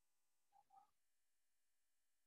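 Near silence (room tone), broken about half a second in by two faint, short pitched sounds close together.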